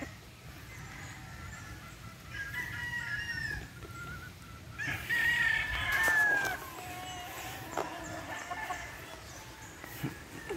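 Gamefowl roosters crowing: a fainter crow about two and a half seconds in, then a louder, longer crow about five seconds in that drops in pitch at its end.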